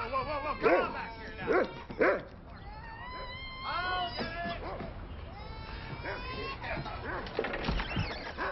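A dog barking three times in quick succession, then making quieter rising-and-falling whining cries.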